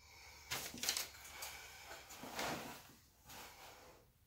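Four short bursts of rustling and scraping: nitrile-gloved hands handling the edges of a wet acrylic-poured canvas.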